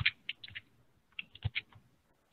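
Computer keys being tapped: a quick run of about five clicks, then a short pause and another run of about four.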